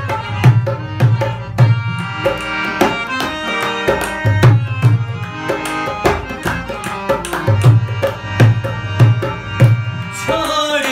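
Dholak (a two-headed barrel hand drum) and harmonium playing an instrumental passage of a folk song. Deep, repeated bass strokes on the drum sound over the harmonium's steady held reed notes.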